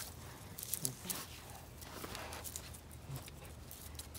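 Faint rustling and scraping of rope being pulled and tucked through a lashing around a tree trunk, with a few small scratchy clicks in the first half.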